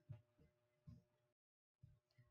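Near silence: faint room tone with a few soft low bumps, and a moment of complete silence a little past the middle.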